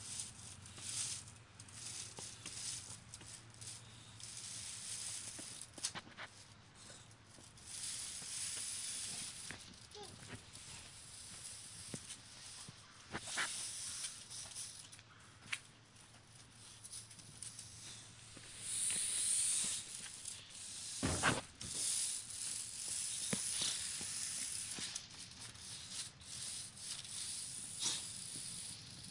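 Straw broom bristles scraping across a concrete driveway in irregular pushes and drags, a dry hissing rasp that comes and goes. About three quarters of the way through there is one louder, brief, coarser sound.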